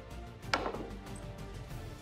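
One sharp crack about half a second in: a snooker cue striking the cue ball hard in a forceful, frustrated swing, with soft background music underneath.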